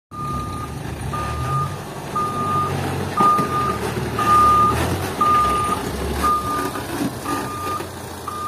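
Reversing beeper on an old Toyota Dyna dump truck backing up with a full load of fill: a steady high beep about half a second long, about once a second, over the low running of the truck's engine.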